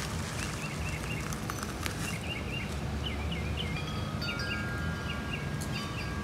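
Small birds chirping and twittering over and over against a steady low outdoor background, with a few long, clear ringing tones setting in about four seconds in.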